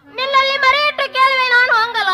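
A high-pitched voice singing long, wavering notes over a steady low drone.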